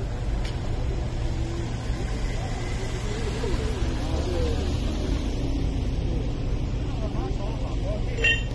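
A car's engine running as it moves slowly past close by, a steady low rumble, with faint voices in the background.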